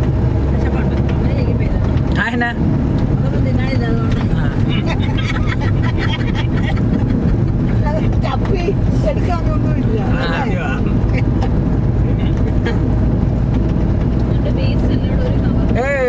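Steady engine and road rumble inside the cabin of a moving Maruti Suzuki Ertiga, with voices talking over it.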